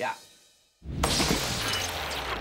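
A mobile phone smashing apart with a sudden crash a little under a second in, its pieces shattering and clattering, over music.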